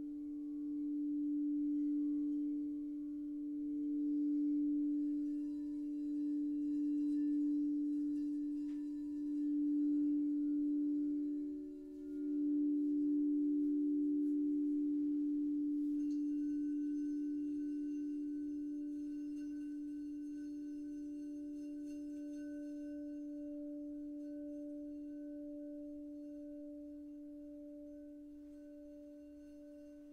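Frosted quartz crystal singing bowls ringing together in long, overlapping sustained tones with a slow pulsing waver. A higher bowl tone enters about twelve seconds in and another about halfway, and the chord then slowly fades.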